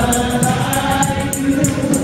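Gospel praise team singing live into microphones, voices holding long notes over accompanying music with a steady percussion beat about four strikes a second.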